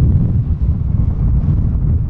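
Wind buffeting the camera microphone on the open deck of a moving boat: a loud, steady, deep rumble.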